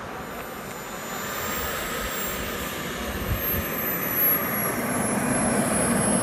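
Kingtech K102 model jet turbine running at low power while the model taxis on the runway: a thin high whine over a rushing hiss, growing steadily louder.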